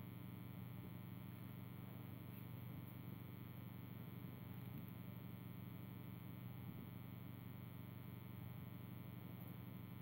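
Faint, steady electrical hum, room tone with no distinct event in it.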